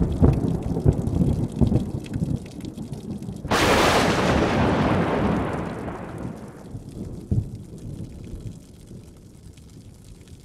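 Thunder sound effect: a low rumble with irregular rolling thumps, then a sudden loud crack about three and a half seconds in that dies away over some three seconds, with one more thump later on.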